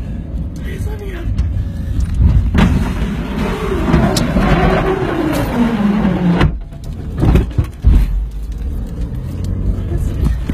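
Steady low rumble inside a car driving through a wildfire, with a woman's long wailing moan that falls in pitch in the middle, and a couple of sharp knocks about three-quarters of the way through.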